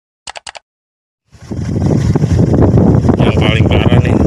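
Three quick clicks from a subscribe-button animation. About a second and a half in, a motorcycle starts up loud, riding with heavy wind rumble on the microphone.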